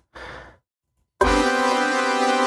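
A short breathy exhale, a pause of silence, then a hip-hop track starts about a second in: sustained chords over a low bass hit.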